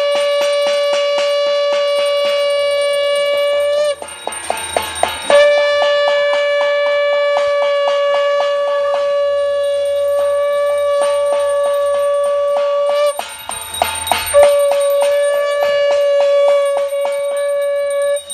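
Conch shell (shankh) blown in long, steady blasts of a single held note. The first blast breaks off about four seconds in, a second runs for about eight seconds, and a third starts a little over a second after that and carries on.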